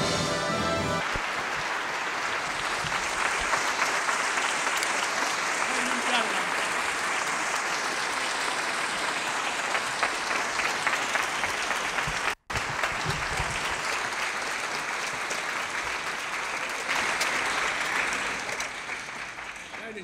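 Large theatre audience applauding steadily, after a piece of music ends about a second in. The applause cuts out for an instant about two-thirds of the way through and fades away near the end.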